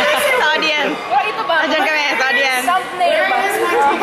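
Several people chatting, their voices overlapping, with no other sound standing out.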